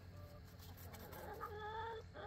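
Chickens clucking faintly: a short call early, then a longer drawn-out call near the end.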